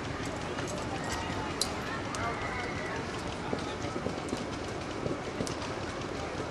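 Indistinct, faraway voices over a steady background hiss, with a few faint clicks.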